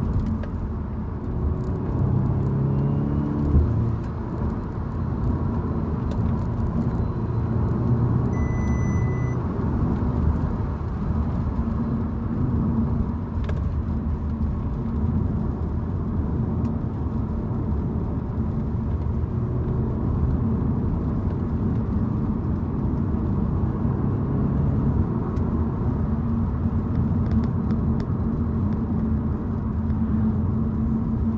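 Audi S3 saloon's turbocharged four-cylinder engine and road noise heard from inside the cabin while driving, the engine note rising and falling with the throttle in the first few seconds, then running steadily. A short high beep sounds about nine seconds in.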